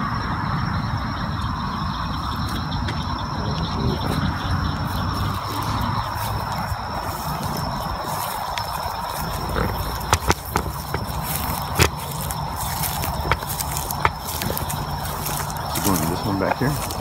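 Handling and rustling noise from walking across grass with a handheld camera, over a steady high tone of insects calling at night. A few sharp clicks come about ten and twelve seconds in.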